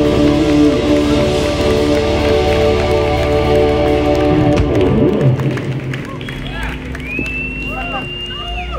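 Live band with drums, electric guitar and keyboards holding a final chord that breaks off about five seconds in with a downward slide. Then the audience takes over with voices and calls, and one long high whistle near the end.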